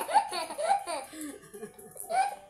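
A young child laughing: a quick run of short laughs in the first second or so, trailing off after.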